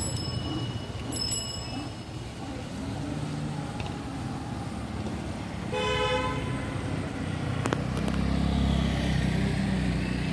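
A vehicle horn honks once, briefly, about six seconds in, over steady street traffic noise. A low engine rumble grows louder near the end.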